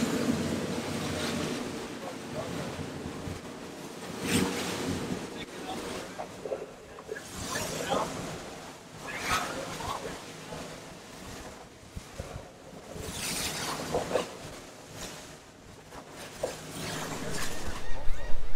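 Fishing boat running at speed through chop: steady wind rush on the microphone with the hull slapping and throwing spray in louder splashes every few seconds.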